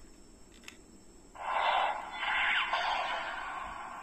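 Black Spark Lens transformation-device toy playing an electronic sound effect through its small built-in speaker. The effect starts a little over a second in, after a faint click, and has a brief falling sweep partway through.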